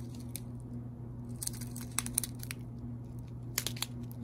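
Plastic bags of square resin diamond-painting drills being handled, giving short crinkles and rustles in a couple of bunches, around the middle and near the end, over a steady low hum.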